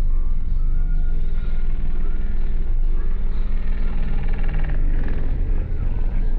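A high-power car audio system playing music loud, heard from outside the vehicle: deep, steady sub-bass from the subwoofers dominates, with the music's higher parts fainter above it.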